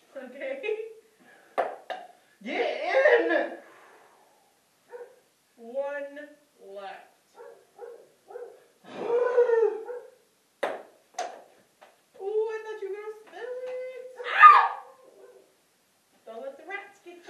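Voices in a small room, broken by a few sharp taps of a ping-pong ball striking the table or cups, two close together near the start and two more about two-thirds of the way through.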